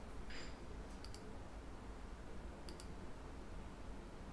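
Faint computer mouse clicks over a low steady room hum: two quick pairs of clicks, one about a second in and one near three seconds in.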